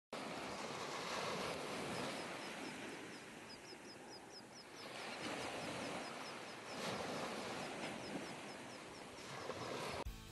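Surf washing up on a beach, the noise swelling and easing back in slow surges, with a bird chirping over it in a quick, steady series of short, high chirps.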